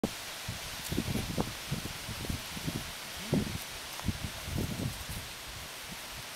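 Outdoor rustling over a steady hiss, with many irregular low thumps and rumbles.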